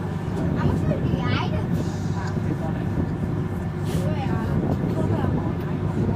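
Glacier tour bus's engine running at idle, a steady low hum, with passengers' voices chattering in the cabin.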